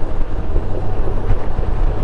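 Strong gusting wind buffeting the microphone on a moving Honda Gold Wing motorcycle: a loud, steady low rumble of wind noise with the bike's riding noise underneath, unfiltered by any voice isolation.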